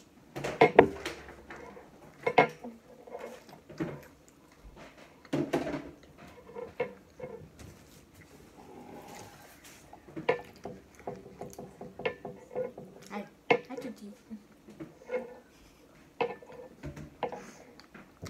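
Plastic water bottle being handled and drunk from, with scattered small clicks and knocks.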